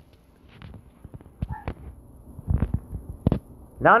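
Low room noise with a few soft, scattered knocks and thumps, a small cluster of them about two and a half seconds in.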